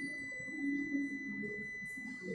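A steady high-pitched electronic tone with fainter overtones, over faint, indistinct voices in the background.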